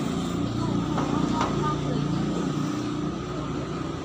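A motor vehicle engine running steadily close by in street ambience, with a few light clicks and a short word from a voice.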